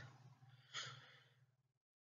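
Near silence between narrated sentences: one faint breath from the narrator about a second in, over a low hum that cuts out abruptly near the end.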